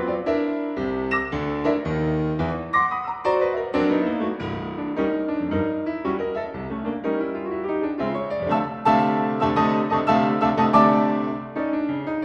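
Solo piano playing a ragtime piece: a steady stream of struck notes and chords.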